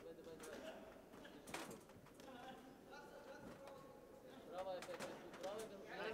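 Faint boxing-arena sound: distant voices calling out from ringside, with a few sharp thuds of gloved punches landing during an exchange at close range.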